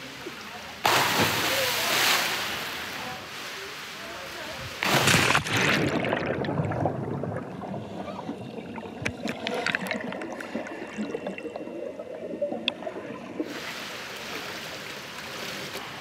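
Water splashes as a fully clothed person drops into a swimming pool, a loud splash about a second in and another around five seconds. Then comes a long stretch of muffled sound heard from under the water, with bubbling and small clicks, before open surface splashing of swimming returns near the end.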